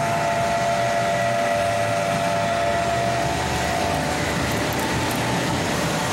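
A screw press running steadily: its electric motor and gearbox give several steady whine tones over a broad mechanical hum, and some of the tones fade out about two-thirds of the way through.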